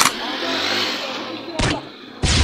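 Two sharp bangs about a second and a half apart, with a rushing noise between them: dubbed gunshot sound effects.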